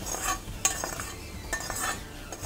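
Metal spoon scraping the inside of a steel kadhai as fried chillies and garlic are emptied out: three scraping strokes, the last one longer.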